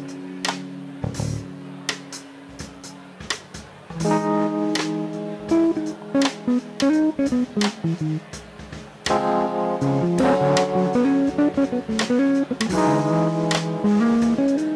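Live instrumental jazzy band music led by electric guitar: a held chord dies away, then from about four seconds in the guitar plays a run of picked melody notes over the band, with sharp drum clicks, getting fuller toward the end.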